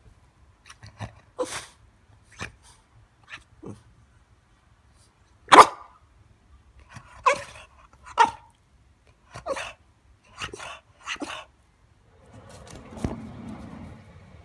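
French bulldog giving a string of short single barks, roughly a second apart, the loudest about halfway through.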